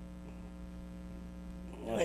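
Steady electrical hum on the recording: a low buzz made of several fixed tones, unchanging through a pause in speech. A man's voice starts again right at the end.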